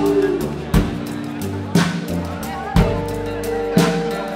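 Live band music with a slow beat: a heavy drum hit about once a second over held bass and keyboard tones, with electric guitar.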